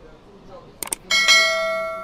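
Subscribe-button animation sound effect: two quick mouse clicks, then about a second in a bright notification-bell chime struck and ringing out, slowly fading.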